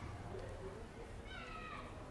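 A newborn macaque infant gives one short, high-pitched, mewing cry that falls slightly in pitch, a little past a second in, over a low background rumble.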